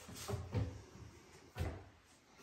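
Cabinet doors being handled: a few soft knocks about half a second in, then a sharper thump at about a second and a half.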